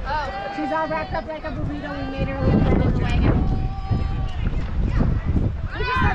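Several voices of spectators and players calling out and cheering at a youth baseball game, some calls drawn out, over a low rumble of wind on the microphone.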